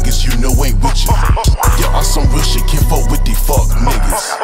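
Trap-style hip hop beat with a deep, sustained 808 bass and fast hi-hats under a rapped vocal. The bass drops out briefly about one and a half seconds in.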